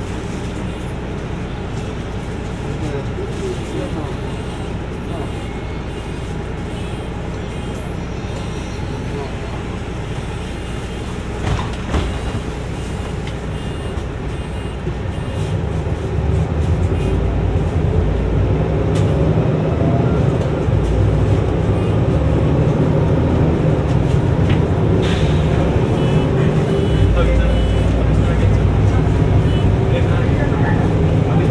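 Cabin sound of a Mercedes-Benz city bus: the engine runs steadily while the bus is stopped, with a single knock about twelve seconds in. Around halfway the engine note rises and grows louder as the bus pulls away and gathers speed.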